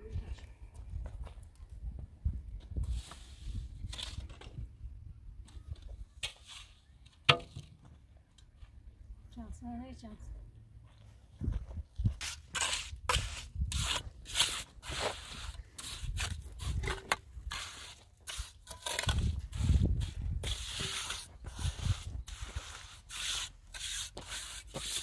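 Trowel scraping and tapping wet mortar on concrete blocks: a quick run of rough strokes that starts about halfway through, with a sharp knock a few seconds before. Wind rumbles on the microphone.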